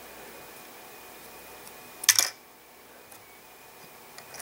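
Quiet room tone, broken about two seconds in by one short, sharp click of small plastic parts as a model train's coupler cover and coupler are pressed into place on the truck.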